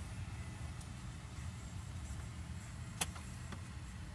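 Low, steady road rumble of a moving car heard from inside the cabin, with one sharp click about three seconds in.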